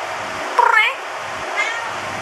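A domestic cat meowing twice: a loud meow about half a second in and a fainter, shorter one near the end.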